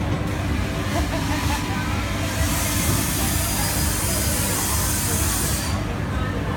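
A long hissing breath blown out through pursed lips, starting about two seconds in and lasting about three and a half seconds: a boy exhaling the vapour of a liquid-nitrogen-frozen snack. Low chatter and rumble sit under it throughout.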